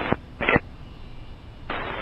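Air traffic control radio between transmissions: a short burst of squelch noise about half a second in, low radio hiss, then a louder rush of static near the end as the next transmission keys up.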